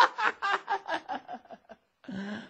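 A man's sly chuckle, a quick run of short laughing pulses, about six a second, that grow fainter and die away: a storyteller voicing a scheming character's laugh after the plot is whispered.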